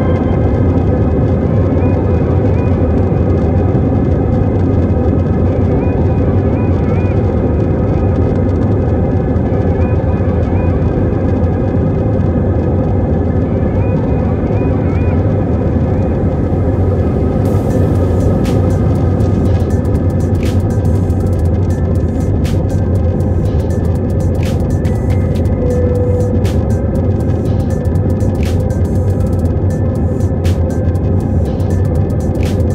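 Airliner jet engines at takeoff thrust, heard from inside the cabin as a loud, steady sound through the takeoff roll and climb-out, with music playing over it. From about halfway through, sharp clicks and knocks come and go on top.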